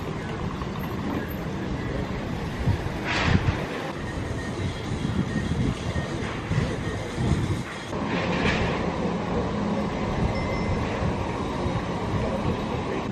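Outdoor street ambience: a steady low rumble of noise, with two brief louder rushes, about three seconds in and past eight seconds.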